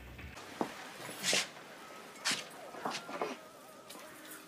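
A woman crying: several short, sharp breathy sobs and sniffs with faint whimpering between them.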